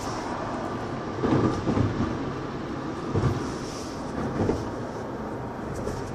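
Steady road and engine noise inside a moving car's cabin, with a few brief low thumps or rumbles.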